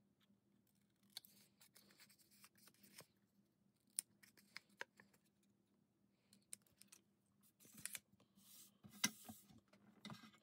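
Faint, sharp snips of small paper snips cutting tiny corners off folded designer series paper, a few separate cuts spread through, with soft rustling of paper handling near the end.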